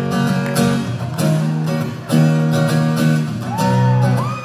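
Acoustic guitar strumming chords in a steady rhythm, each strum ringing on into the next.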